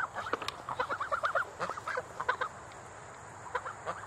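Chickens clucking in short, repeated calls. The calls come thick in the first second and a half and grow sparse after that.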